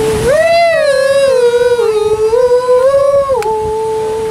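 A voice singing one long, high held note that swoops up at the start, wavers, and steps down slightly about three and a half seconds in, still held.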